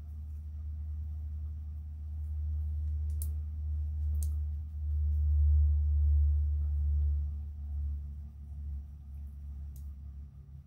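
A low, steady rumble that swells and grows louder through the middle, with a few faint, brief clicks.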